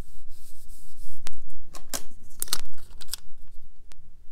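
A sticker peeled off its backing and a sticker sheet handled against paper: rustling with several sharp crackles spread over a few seconds.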